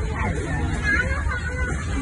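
Indistinct chatter of several people talking in the background, over a steady low rumble.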